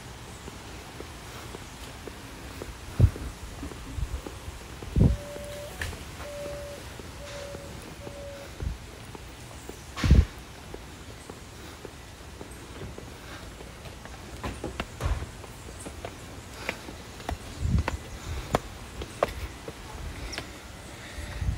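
Footsteps on a paved path, with a few heavier, irregular thumps scattered through. A faint, steady high note is held for about three seconds in the middle.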